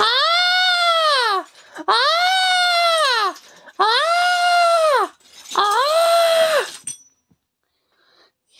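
A high-pitched voice crying out a long "Aaah!" four times in a row, each call rising and then falling in pitch and lasting over a second, with short gaps between.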